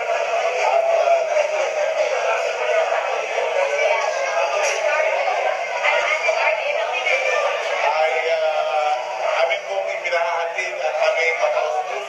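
A man singing into a microphone over backing music. It is played back through a screen's speakers and sounds thin, with almost no bass.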